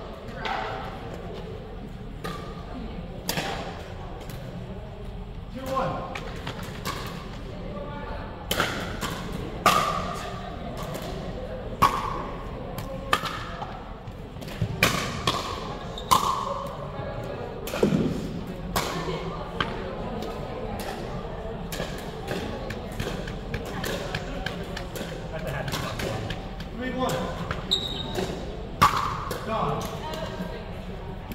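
Pickleball play: sharp pops of paddles striking the hollow plastic ball and the ball bouncing on a hard gym floor, coming at irregular intervals throughout, echoing in a large gymnasium, over background chatter.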